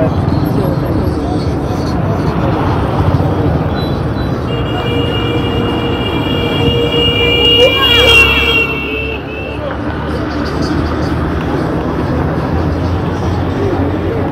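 Busy street noise: road traffic and motorbike engines with people's voices, and a steady high-pitched tone held for about five seconds in the middle.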